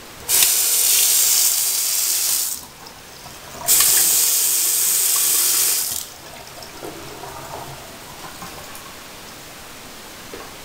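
Water running from a two-handle bathroom faucet into the sink basin, turned on twice for about two seconds each, with a short pause between.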